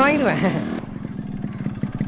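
Motorcycle engine running with a rapid, even pulsing. A man's voice trails off over it at the start.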